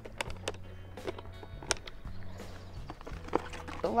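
Clear plastic tackle boxes being handled, set down and lifted out, giving a scatter of sharp plastic clicks and knocks. Faint background music with a low steady bass plays underneath.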